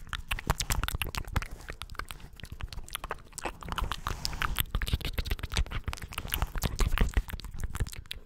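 Close-up wordless mouth sounds made with the lips pressed against a foam-covered microphone: a dense, irregular run of wet clicks and smacks, with low thumps of the mouth on the mic.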